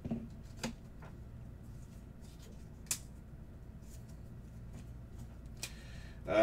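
Trading cards in plastic sleeves and holders being handled on a table: a few small clicks and taps, the loudest about halfway through.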